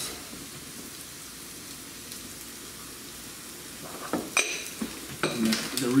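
Food sizzling steadily in a cast-iron frying pan, with a few sharp clicks of utensils or dishes about four to five seconds in.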